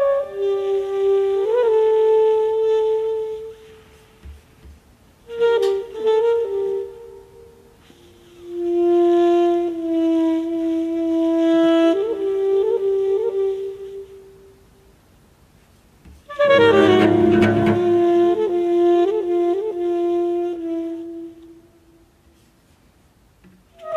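Saxophone playing slow phrases of long held notes with quick little turns up and down in pitch, in four phrases with short gaps between them. This is Dicy2's demo sax recording, the material the software improvises against with the pre-recorded cello. The last phrase starts fuller, with some lower sound under it.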